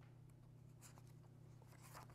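Near silence: room tone with a steady low hum, and a faint rustle of paper pages being handled about a second in.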